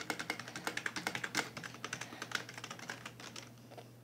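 Typing on a Genius computer keyboard: a quick, dense run of key clicks that thins out and stops shortly before the end.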